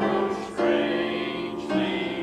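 Church choir singing a hymn, holding notes that change about half a second in and again near the end.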